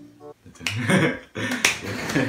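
A few sharp clicks or claps among breathy laughter.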